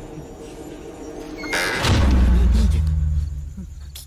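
Horror film soundtrack: low, quiet music, then about a second and a half in a sudden loud, deep, roar-like growl that swells and fades out near the end.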